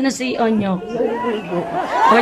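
Speech only: people chattering, voices talking over one another too unclearly to make out words.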